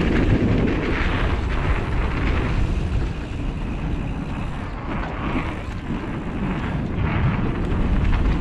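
Wind rushing over an action camera's microphone, mixed with the rumble of mountain bike tyres rolling over a dry dirt trail. The noise is steady and heavy in the low end.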